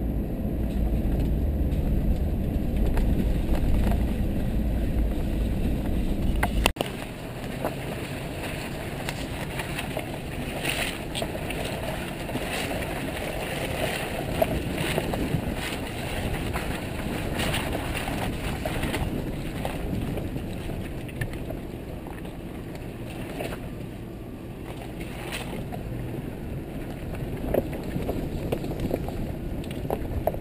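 GMC Yukon driving slowly over a rough, wet dirt trail. A deep engine and body rumble cuts off abruptly about seven seconds in. Tyre and trail noise follows, with scattered knocks and splashes and some wind.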